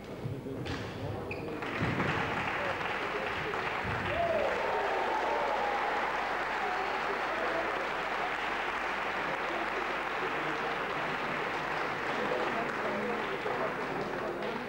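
Spectators applauding a won point in a badminton match, starting with a burst about two seconds in and going on steadily, with a few voices calling out over it. Just before the applause, a couple of sharp knocks from the end of the rally.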